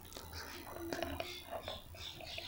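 Faint, indistinct voices in the background, with a few soft clicks from a computer keyboard as an OTP is typed.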